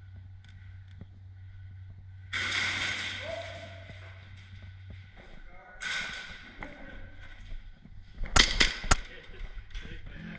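A quick string of about five sharp airsoft gun shots a little over eight seconds in, the loudest thing here. Before them come two louder rushes of noise, each fading over about a second, and a few faint clicks.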